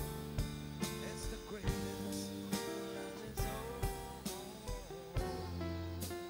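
Live band playing: acoustic guitar, bass, keyboard and drum kit, with the drums keeping a steady beat of about two strokes a second under sustained low bass notes.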